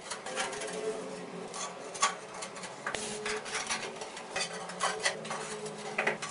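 Ceramic wall tiles being handled and pressed onto tile adhesive: irregular light clinks, taps and scrapes.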